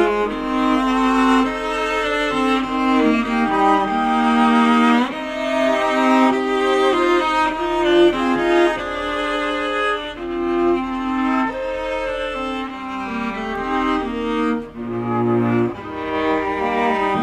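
A flute, viola and cello trio playing a chamber serenade, the flute's line over bowed viola and cello.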